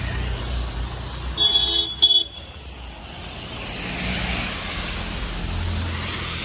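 A vehicle horn sounds about a second and a half in: a half-second blast and then a short second toot. Behind it traffic runs steadily on the rain-wet road, with a low rumble and a hiss that swells in the last few seconds as a vehicle passes.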